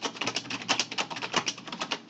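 Typing on a computer keyboard: a fast, uneven run of key clicks, about seven or eight keystrokes a second.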